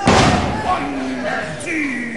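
A wrestler's body hits the ring canvas with a heavy thud right at the start. Spectators shout after it.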